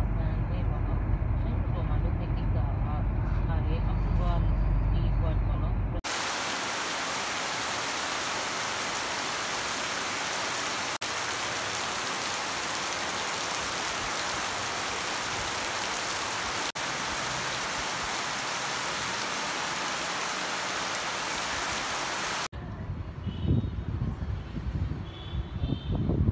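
Road noise and low engine rumble heard from inside a moving vehicle for about six seconds. Then a sudden cut to heavy rain falling steadily, a dense even hiss, with two brief breaks where the shots change.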